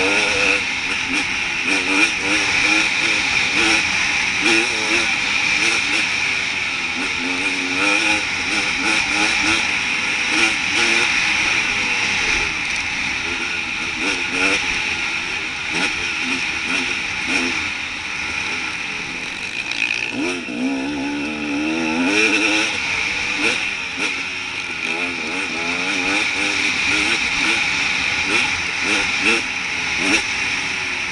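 Off-road enduro motorcycle engine revving up and down continuously while riding a rough trail, with a strong climb in revs about twenty seconds in. A steady hiss and frequent short knocks run under the engine.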